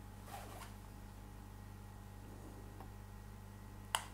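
A knitted leaf being handled against a glass gives a faint rustle about half a second in, then a single sharp click near the end, over a low steady hum.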